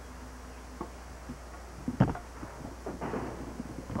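A short click, then a sharp thump about two seconds in followed by scattered softer knocks and rustling, over a steady low electrical hum.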